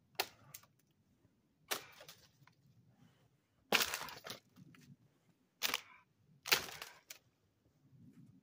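Dry dead cedar branches cracking and snapping as they are broken off the tree: about five sharp cracks a second or two apart, each with a short splintering tail.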